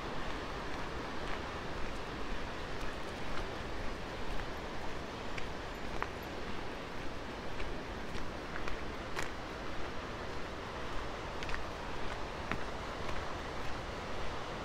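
Steady outdoor background hiss with a low rumble underneath and a few faint clicks scattered irregularly through it.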